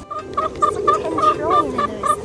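Hens clucking while they feed: a quick, steady run of short clucks, about four or five a second.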